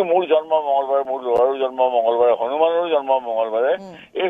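A man speaking continuously over a telephone line, his voice thin and narrow as through a phone.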